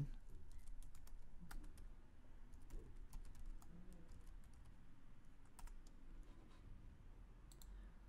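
Faint computer keyboard typing: scattered keystrokes as a short command is typed and entered, most of them in the first couple of seconds and a few more near the middle and near the end, over a low steady hum.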